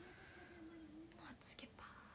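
A woman's very quiet, drawn-out murmur under her breath, held on one slightly wavering pitch for about a second, then a faint tick about a second and a half in.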